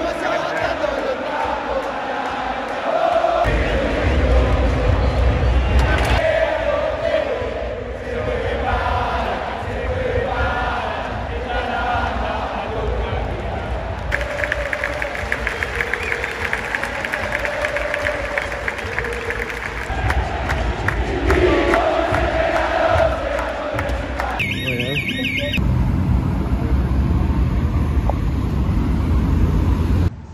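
A huge football crowd singing a terrace chant together in the stands, thousands of voices in unison. Near the end it cuts to the steady rumble of city traffic.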